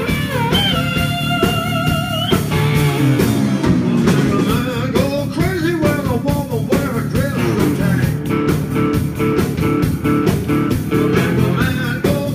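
Live electric blues band playing: a harmonica holds wavering notes for the first couple of seconds, then electric guitar lines bend and weave over the band's steady low end.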